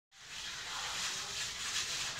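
Steady outdoor background hiss with no distinct strokes or knocks.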